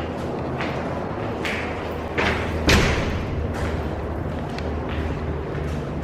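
A door swinging shut with two thuds about half a second apart, the second louder, over a steady low hum.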